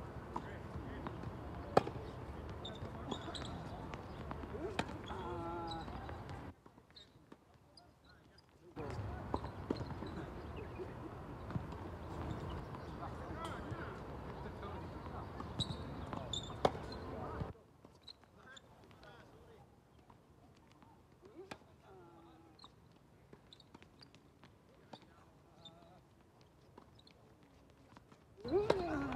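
Tennis balls struck by rackets and bouncing on a hard court during a doubles rally: scattered sharp pops, the loudest about two seconds in. They sound over faint distant voices and a steady background hiss that cuts out twice.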